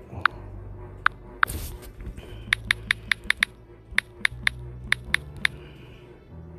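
A run of sharp clicks and taps, like keystrokes on a device, while a Bible passage is looked up, over quiet background music. There are a few isolated clicks and a brief rustle in the first second and a half. After that the clicks come quicker, several a second, and then thin out.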